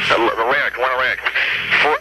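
Speech only: a man talking over a telephone line on a radio call-in, the voice thin and cut off at the top.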